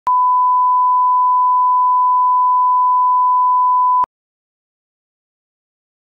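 Steady 1 kHz test tone, the reference tone that runs with colour bars for setting audio levels. It lasts about four seconds and cuts off suddenly.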